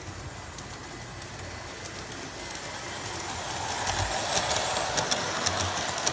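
Large-scale (G-scale) model train, a small Bachmann Davenport locomotive pulling Jackson Sharp passenger coaches, rolling along the track toward the microphone. It grows louder over the last few seconds, with light clicks from the wheels on the rails. The coaches' wheel contacts have been freshly oiled, so there is no squeaking.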